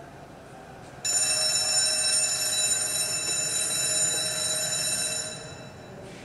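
A twin-bell mechanical alarm clock ringing loudly: it starts suddenly about a second in, rings steadily for about four seconds and stops near the end.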